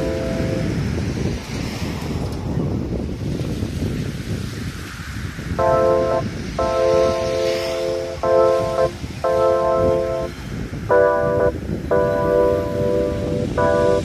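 Small surf breaking on a sand beach, heard as a steady rushing noise. About halfway in, background music enters over it as a string of short held chords, repeating with brief gaps.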